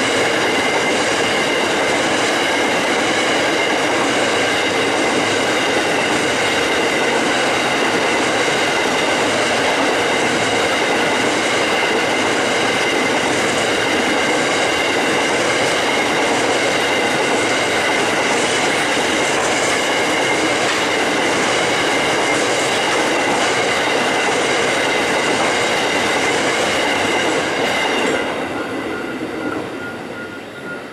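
Coal train hopper wagons rolling past, their wheels running on the rails with a steady high-pitched whine over the rumble. The sound falls away near the end as the last wagon passes.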